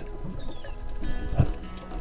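Quiet background music with sustained held tones and a short knock about one and a half seconds in.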